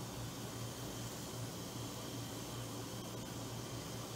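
Steady low hiss with a faint low hum underneath, even throughout, with no clinks or knocks.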